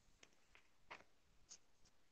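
Near silence: room tone with a few faint, short clicks, about four in two seconds.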